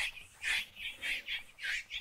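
Chalk writing on a blackboard: a quick run of short, scratchy strokes, about eight in two seconds.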